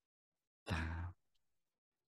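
A man's voice speaking one slow, soft word, half a second long, about a second in: a hypnotist's drawn-out 'down' in a stair-counting induction. Around it there is dead silence.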